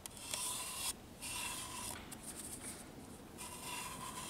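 Cotton swab rubbing along the glass window of a Samsung ML-1660 laser printer's laser scanner unit, in about four short hissing strokes.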